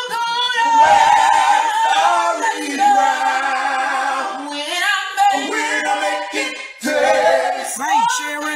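A cappella gospel singing by several voices, holding long notes that bend in pitch, with a brief break near the end.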